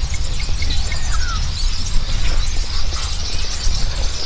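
Birds chirping here and there over a steady low rumble.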